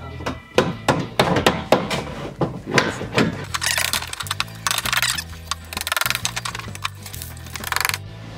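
Background music with a steady bass line, with a run of sharp knocks and clinks in the first three seconds or so.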